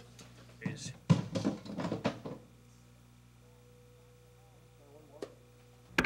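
Mostly speech: a voice exclaiming "It worked!" early on, then quiet tape hum with faint voices in the background and a single sharp click near the end.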